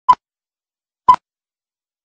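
Film countdown-leader beeps: two short, identical high-pitched beeps about a second apart.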